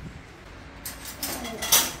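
Stainless steel Thermomix mixing bowl being lifted out of the machine and handled: a clatter of metal knocks starting about a second in and loudest near the end.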